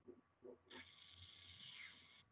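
Near silence, with a faint hiss starting just before the middle and lasting about a second and a half.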